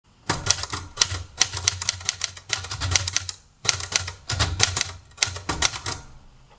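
Manual typewriter being typed on: quick runs of sharp key and typebar strikes with brief pauses between runs.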